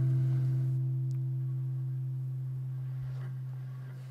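Acoustic guitar's last chord ringing out and slowly fading, a low note holding longest.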